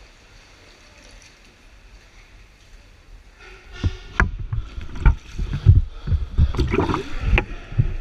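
Water lapping softly in a narrow sea cave, then, about halfway through, a run of loud, irregular knocks and thumps as the camera and board gear are jostled.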